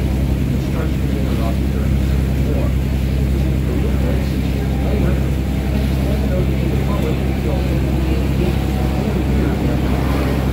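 Boat engine running steadily, a low even hum.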